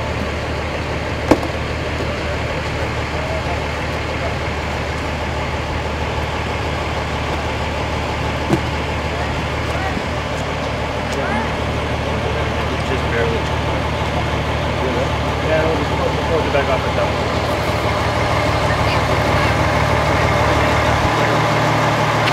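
Vehicle engine idling: a steady low drone, with faint voices in the background and two sharp clicks, one about a second in and one near the middle.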